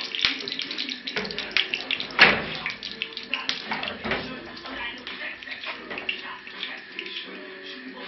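Hot lard sizzling and crackling in a frying pan, spitting because there is water in the fat, with a louder knock about two seconds in.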